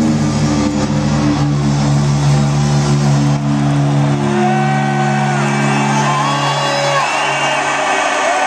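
A live rock band's loud distorted electric guitar chord held and ringing out at the end of a song. The lowest bass drops away about halfway, and high sliding tones come in over the held chord near the end.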